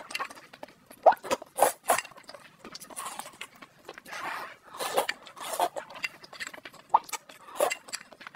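Close-miked slurping and chewing of spicy Korean noodles: an irregular run of short wet slurps and mouth smacks, several a second.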